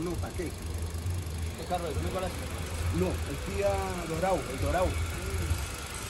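Hyundai Grand i10 1.25 four-cylinder petrol engine idling steadily at about 750 rpm, fully warmed up. After the electronic throttle body was reprogrammed with a scanner, the idle is stable and within specification. Indistinct voices are heard over it now and then.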